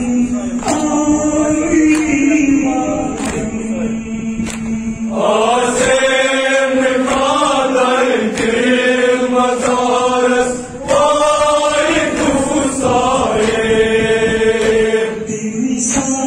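Voices chanting a Kashmiri noha, a Shia lament, in long sung phrases over a steady held note, with a sharp beat keeping time about once a second.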